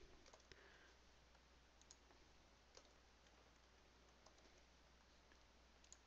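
Near silence: faint room tone with a few scattered, faint clicks from a computer keyboard and mouse.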